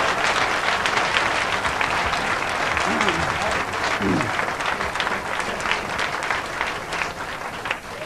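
Studio audience applauding, dying away near the end.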